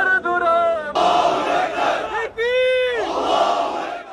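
A crowd of protesters chanting and shouting, with one voice clearest in the first second. About two and a half seconds in, a single long shout rises and falls in pitch over the crowd.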